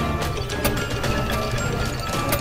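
Intro music with mechanical sound effects of gears turning, a run of ratcheting clicks over the music.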